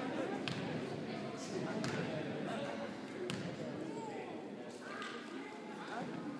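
A basketball bouncing a few times on a hardwood gym floor as a free-throw shooter dribbles before the shot, over a low murmur of spectators' voices in a large gym.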